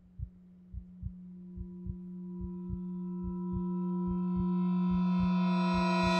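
Film score: one low sustained note swells steadily louder and brighter over a low heartbeat-like double thump that repeats a little under once a second.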